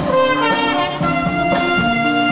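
School concert band playing: trumpets, saxophones, clarinets and low brass holding notes that move from chord to chord, over a drum kit.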